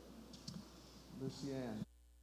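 Faint room sound through a microphone, with a couple of light clicks about half a second in. Near the end comes a brief wordless sound from a man's voice, cut off abruptly.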